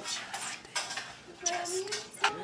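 Dishes and cutlery clinking, several sharp clinks spread through the moment.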